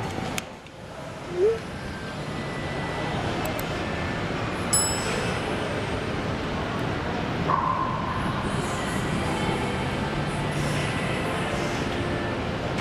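Steady background noise of a large gym hall, with a brief faint click about five seconds in.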